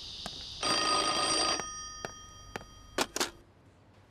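An old-style desk telephone's bell rings once for about a second, starting just under a second in, and its ring dies away. About three seconds in, two sharp clicks follow as the receiver is lifted.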